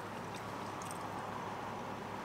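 Steady low hum of a car cabin, with a few faint clicks of plastic forks on takeout trays and quiet chewing.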